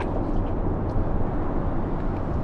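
Steady low rumbling noise with no clear pitch and a few faint ticks.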